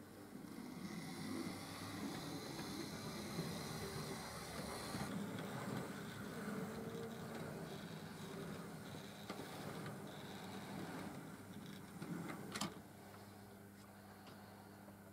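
Hornby Dublo OO-gauge model trains running on the layout track: a faint low rumble of wheels and motor hum that swells about half a second in and holds. A sharp click sounds near the end, and the rumble drops back after it.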